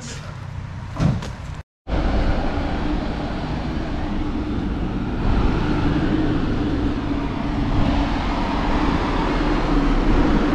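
Steady city street traffic noise with a low engine hum, from buses and cars on the road, a little louder about halfway through. A short knock and an abrupt cut in the sound come before it, about two seconds in.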